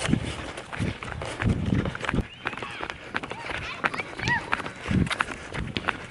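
A person running on a concrete sidewalk: footfalls thudding unevenly about twice a second, with rustle from the camera being carried.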